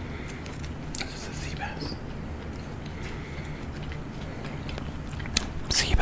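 Close-miked mouth sounds of a person chewing raw fish sashimi, over a steady low hum, with a few sharp clicks near the end.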